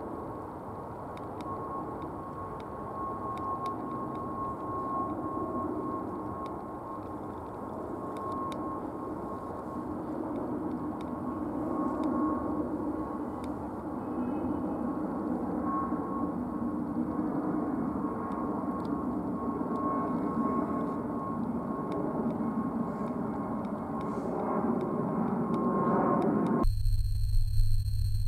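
Airbus A320neo's CFM LEAP-1A turbofans heard from the ground as the airliner climbs overhead: a steady rumble with a thin, steady whine on top, slowly growing louder. Near the end the jet sound cuts off suddenly and gives way to a chord of steady electronic tones.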